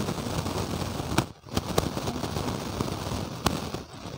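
Crackling, rushing noise with several sharp clicks scattered through it.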